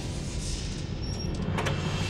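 A low rumbling drone, with a few sharp metallic clicks about one and a half seconds in as the bolt of a wooden door is slid shut.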